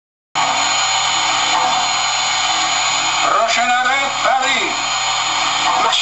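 A steady, loud hiss from the MTH Chapelon Pacific model locomotive's sound system, starting abruptly just after the start, with a faint voice coming through it a little past halfway.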